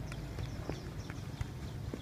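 Light, irregular taps of football boots touching a football and quick steps on artificial turf, several a second, over a steady low rumble.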